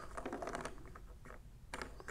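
Faint light clicks and taps of a plastic tank-top piece and its rubber uniseal being handled, a few near the start and a cluster again near the end.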